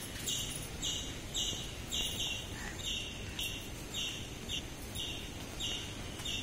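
A high chirp, each about a third of a second long, repeating evenly about twice a second, over low steady background noise.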